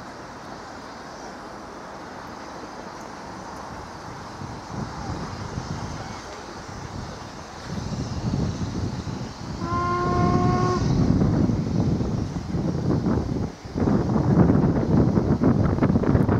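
LMS Royal Scot Class three-cylinder 4-6-0 steam locomotive working away under power, its exhaust and running noise building up. Near the middle it gives one whistle blast of about a second.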